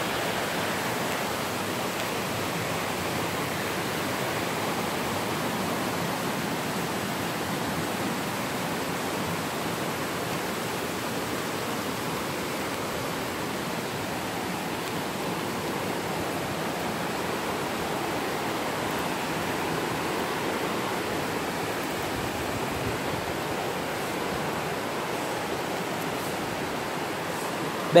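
River water rushing over and between rocks in a steady, unbroken flow.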